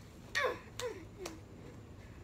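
Three short, sharp yelps about half a second apart, each falling in pitch.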